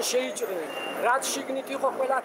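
A man speaking, with street traffic driving past behind him.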